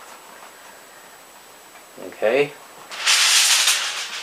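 A sheet of aluminum foil crinkling as it is handled, starting about three seconds in.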